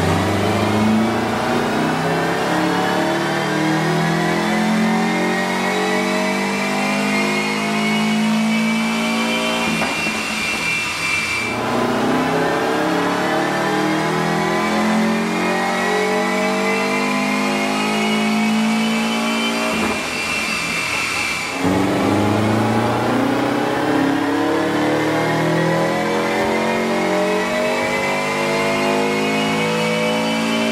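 Turbocharged 2.5-litre flat-four of a Subaru Legacy GT making full-throttle power runs on a chassis dyno. There are three runs in a row, the engine note climbing steadily through the revs for about nine seconds each, with a short break before each new run starts low again.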